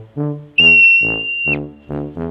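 A marmot's alarm whistle: one long, steady, high-pitched call starting about half a second in and lasting about a second. It is heard over tuba-led brass music with a bouncy beat.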